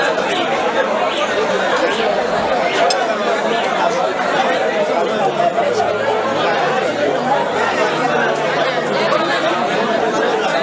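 Crowd chatter: many people talking at once in a steady, dense babble with no single voice standing out.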